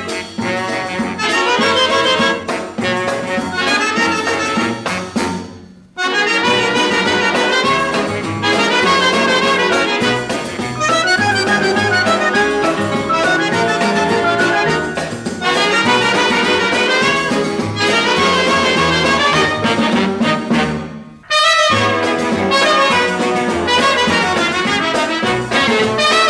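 Instrumental introduction of a 1950s Argentine dance-orchestra recording in baião (baiango) style: brass, trumpets and trombones, playing over bass and rhythm section. The band stops short briefly about six seconds in and again about three seconds before the end.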